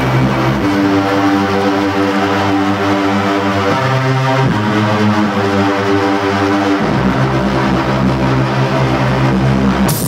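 Live electronic music: sustained, droning synthesizer chords that step to a new pitch about half a second in, again about halfway through, and near seven seconds. Right at the end a hard-hitting beat cuts in.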